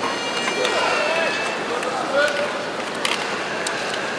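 Female kendo fighters' drawn-out, wavering kiai shouts over the steady hum of a large hall, with a few sharp clacks of bamboo shinai about three seconds in.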